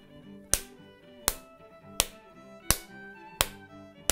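A fist pounded into an open palm five times at an even beat, about one slap every three-quarters of a second, keeping the rhythm for a song. Background music with held notes plays underneath.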